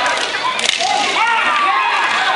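Many overlapping voices shouting and calling at once, with a single sharp crack about two-thirds of a second in.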